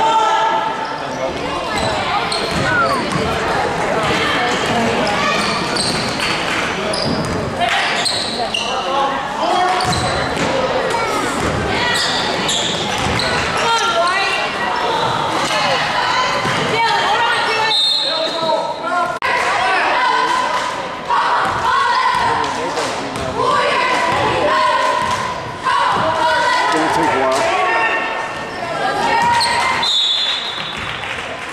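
Basketball game sounds in a gym: the ball bouncing on the court in repeated knocks, mixed with players' and spectators' voices echoing in the large hall.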